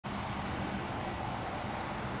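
Steady outdoor background noise with a faint low hum underneath, unchanging throughout.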